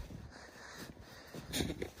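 Boot kicking and scuffing through deep, soft snow, faint, with a man starting to laugh near the end.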